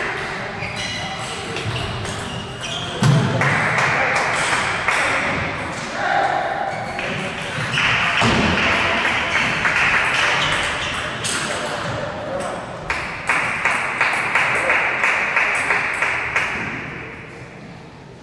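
Table tennis ball clicking off bats and table in quick exchanges during rallies, with people talking in the background.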